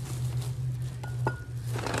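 Black plastic trash bag rustling and crinkling as gloved hands rummage through it, with a few small ticks and more rustling near the end, over a steady low hum.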